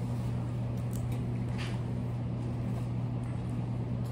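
Steady low machine hum, with a couple of faint, brief scrapes about a second in.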